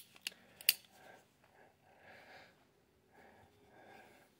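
Two sharp metallic clicks, under half a second apart, from the hand-worked hammer and cylinder of a Heritage Rough Rider .22 single-action revolver, followed by only faint soft sounds.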